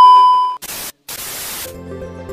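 Television colour-bars test tone: a loud steady beep that cuts off about half a second in, followed by two bursts of TV static hiss. Background music starts near the end.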